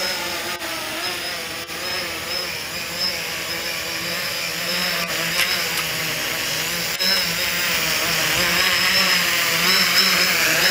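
Octocopter's eight electric motors and propellers running as it hovers: a steady buzzing whine whose pitch wavers up and down as the motors adjust. It grows louder from about seven seconds in.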